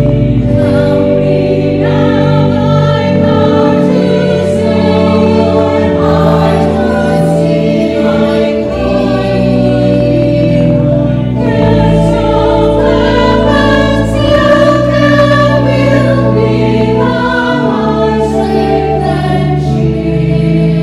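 Church choir of mixed men's and women's voices singing, over organ accompaniment with sustained low notes.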